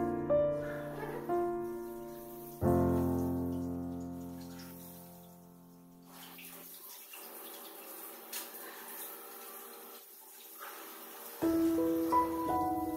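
Solo piano music: a few notes, then a held chord that fades away. In the pause that follows, tap water runs and splashes as the dog is washed, and the piano comes back in near the end.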